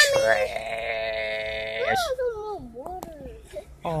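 A young boy wailing: one long held cry that jumps up at the start, stays on one pitch for about two seconds, then wavers and falls away.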